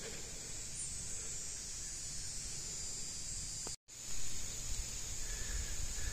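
Faint, steady background hiss with no distinct event; it cuts out for an instant almost four seconds in.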